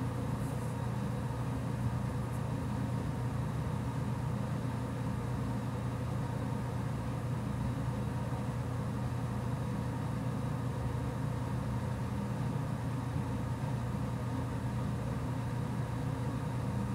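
A steady low hum with faint steady tones above it, unchanging in level, with a couple of faint clicks near the start. No singing or music is heard.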